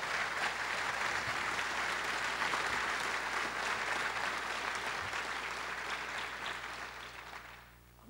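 Audience applauding, holding steady and then dying away near the end.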